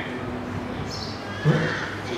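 Low steady hum of an amplified microphone, with one short voiced sound from a man about one and a half seconds in.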